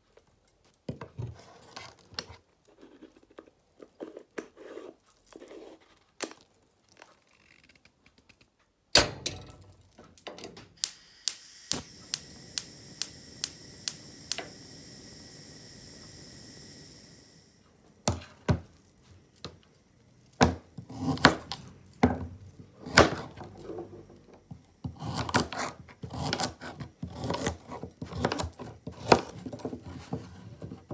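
An aluminium moka pot being filled and screwed together with small metal clicks and scrapes, then a loud clunk. A gas hob igniter clicks about two times a second, followed by the burner's steady hiss that cuts off after a few seconds. Near the end a knife chops celery and carrot on a plastic cutting board in quick runs of knocks.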